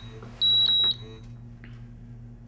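SENSIT P100 carbon monoxide monitor's alarm beeper giving one high-pitched beep of about half a second, starting about half a second in, as the unit runs its warm-up self-test. A steady low hum lies underneath.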